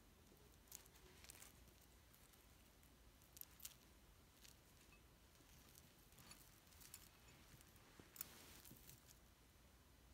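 Faint, scattered small clicks and clinks of a tangled gold-tone chain and its metal charms being handled and picked apart between the fingers. Otherwise near silence.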